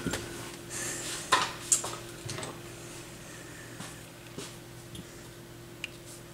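A few light clicks and taps of small metal hardware being handled at a turntable tonearm in the first two seconds, then only a faint steady hum.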